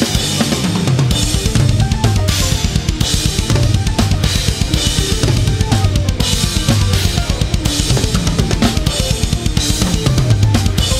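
Acoustic rock drum kit played fast and hard: rapid double bass drum strokes under snare hits and crashing cymbals. It plays along with a progressive metal band track of bass, guitar and keyboards that runs through quick, shifting runs.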